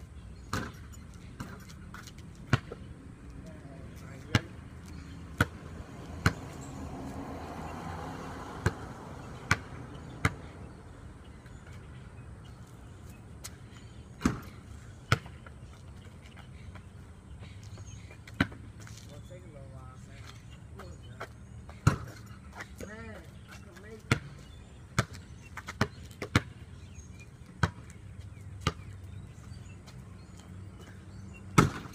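Basketball bouncing on concrete during a one-on-one game, sharp single bounces at irregular intervals, with a faint voice or two in between.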